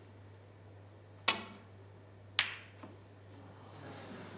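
Snooker shot: the cue tip strikes the cue ball about a second in, then the cue ball hits a red with a sharp click about a second later, in an attempted pot of the red that misses. A low mains hum runs underneath.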